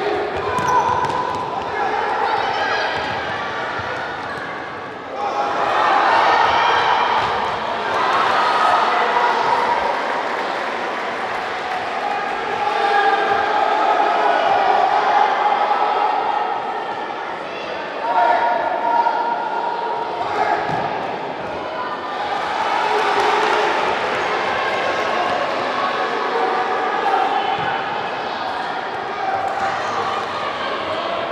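A futsal ball being kicked and bouncing on a wooden sports-hall floor during play, the knocks ringing in the large hall. A steady din of spectators' and players' voices shouting and calling runs throughout.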